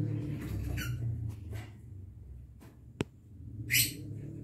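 A lovebird gives one short, shrill squawk near the end, the loudest sound here, after a single sharp click about three seconds in; a low steady hum runs underneath.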